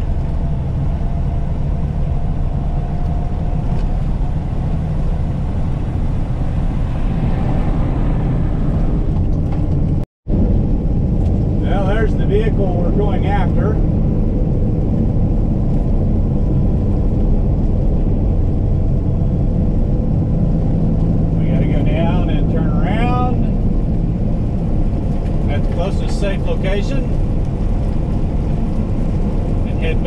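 Diesel engine and road noise heard inside a Peterbilt heavy tow truck's cab while it cruises steadily on the highway, a constant low hum. It cuts out for a moment about ten seconds in.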